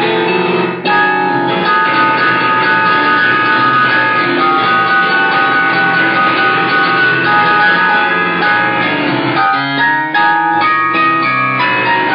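Instrumental music playing continuously, with brief dips in level about a second in and near the ten-second mark.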